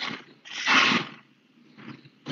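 A voice-chat microphone opening out of dead silence and picking up short bursts of breathy, rustling noise before anyone speaks. The loudest burst comes about half a second to a second in, with a fainter one near the end.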